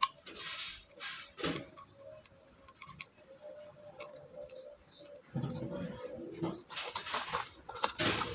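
Handling noise from a plastic drill-to-saw converter attachment: scattered clicks and rattles as it is turned and worked by hand, then rustling in a cardboard box near the end.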